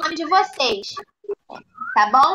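Young children's voices and playful vocal noises coming over a video-call connection, in short broken bursts with a brief hiss-like sound about two-thirds of a second in.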